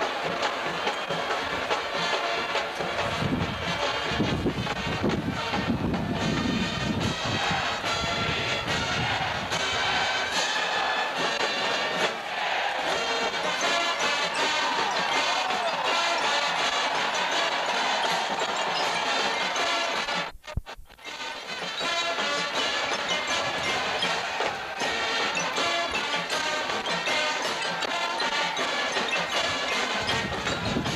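Marching band playing on the field, with brass and drums. The sound drops out briefly about two-thirds of the way through.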